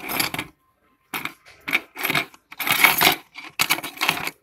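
A bare mobile-phone circuit board being handled and turned over on a wooden bench, giving about six short bursts of knocking and scraping noise.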